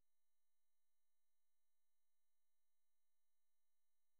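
Near silence: a gap in the narration with only a very faint steady electrical hum.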